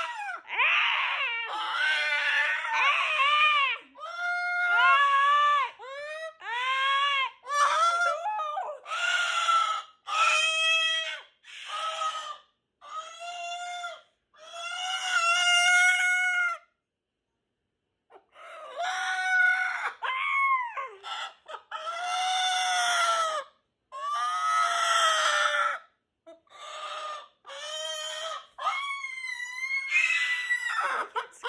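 Moluccan cockatoo screaming over and over: a string of loud, rising-and-falling calls, each up to about two seconds long, with one pause of about two seconds a little past the middle.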